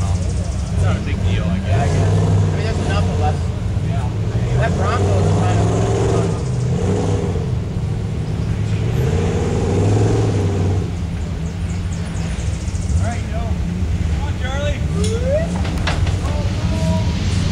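Jeep Wrangler engine pulling at low speed as the Jeep crawls through a deep trail rut, the throttle swelling and easing off three times. People's voices can be heard over it.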